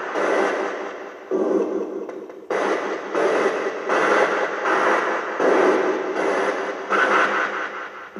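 Radio scanning rapidly through stations, as a ghost-hunting 'spirit box' does: choppy bursts of static and broken broadcast sound that switch abruptly every half second to a second, asked to answer the investigators' questions.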